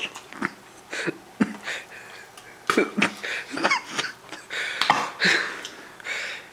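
A man coughing and gagging in a rapid string of short bursts while struggling to swallow a mouthful of vinegary pickled pig's feet.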